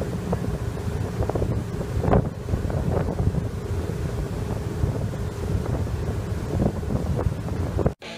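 Wind buffeting the microphone in gusts over the rushing water of a boat's wake churning along its hull.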